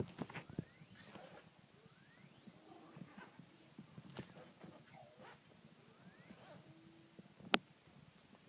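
Sphero BB-8 toy droid making faint electronic chirps and rising whistling beeps, played through its controlling phone app. There is one sharp knock near the end.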